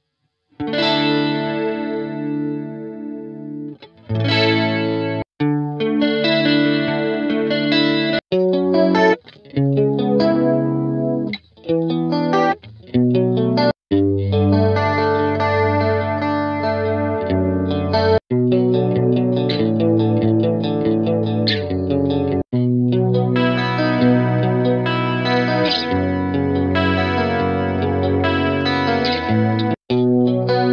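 Guitar sample loops from the Diginoiz Pop Guitars pack played one after another as previews: sustained, pitched chord phrases with effects. Each loop cuts off abruptly and the next starts, about every one to four seconds.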